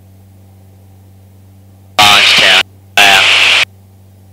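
Steady low drone of a Jabiru light aircraft's engine, heard faintly through the cockpit intercom. Two short loud bursts of voice and hiss break in over the intercom about two and three seconds in.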